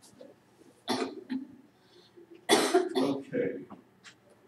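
A person coughing twice, once about a second in and again, louder and longer, at about two and a half seconds.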